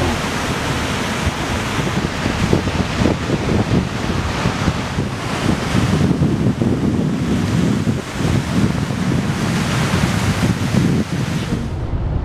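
Ocean surf breaking and rushing, a steady wash of noise, with gusts of wind buffeting the microphone in an uneven low rumble.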